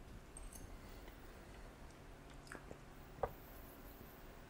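Faint chewing of a mouthful of baked salmon in a quiet room, with a few small clicks, the clearest a little after three seconds in.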